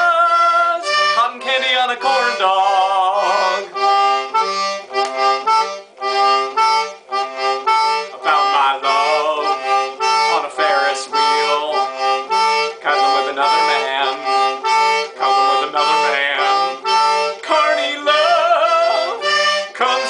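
A toy concertina playing an instrumental break: a reedy melody over bouncing, alternating bass notes.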